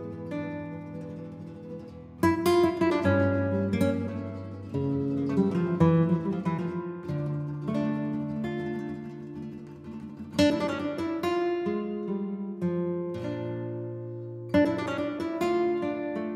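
Flamenco-style acoustic guitar music, with plucked notes and sharp strummed chords about two, five, ten and fifteen seconds in.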